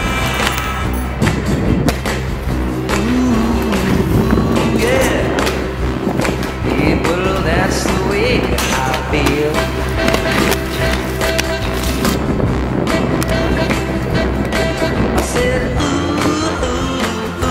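Aggressive inline skate wheels rolling and grinding on concrete, with sharp clacks from landings and hard-plate contacts, heard under a loud rock song with steady bass and guitar.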